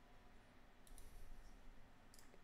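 Near silence with two faint computer mouse clicks close together about a second in.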